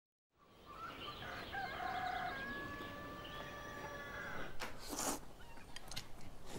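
A rooster crowing once: a long, drawn-out call that starts after a moment of silence. A short clatter follows near the end.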